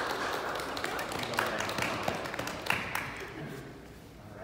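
A small group of people clapping, the applause dying away near the end.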